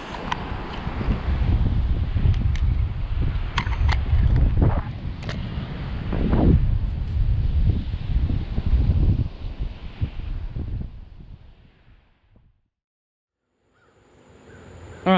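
Wind buffeting the microphone on an open beach: a loud, low rumble that rises and falls, with a few faint clicks. It fades away to silence near the end.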